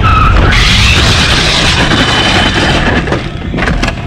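A motorcycle going down in a curve: it skids and slides along the road, a harsh scraping hiss lasting about three seconds over a low rumble. It is heard from a camera mounted on the crashing bike itself.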